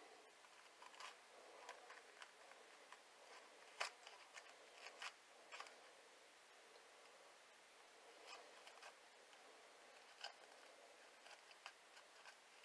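Faint scattered clicks and scrapes of a small knife blade cutting around inside a jalapeño pepper to core it out, the sharpest click about four seconds in, otherwise near silence.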